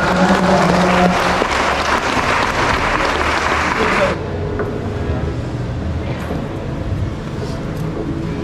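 A church congregation applauding, with voices and cheering over the clapping. The applause stops abruptly about four seconds in, leaving a quieter murmur of voices.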